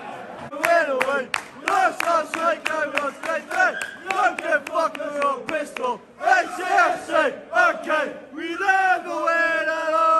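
Football supporters chanting in unison to rhythmic hand claps, then singing a long drawn-out line near the end.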